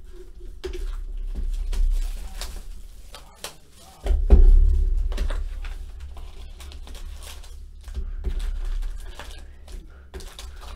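Hands opening a cardboard box of Donruss Optic football cards and lifting out its foil-wrapped card packs: rustling and crinkling with scattered knocks of cardboard on the table, and a heavy thump about four seconds in.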